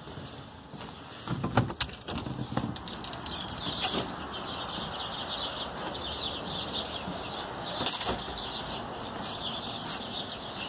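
A storm door clunks open and there are knocks and footsteps on a wooden porch deck in the first few seconds. After that a flock of small birds chirps continuously, with another click near the end.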